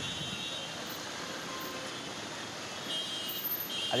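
Road traffic in a jam: a steady hum of slow-moving cars and trucks, with faint high-pitched tones near the start and again near the end.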